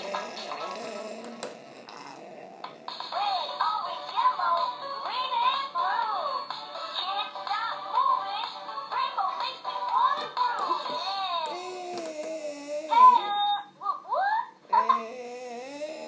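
Electronic musical baby toy, set off by a touch of the hand, playing a tinny tune. The melody starts about three seconds in, breaks off with a few short sliding tones near the end, and a new tune begins just before the end.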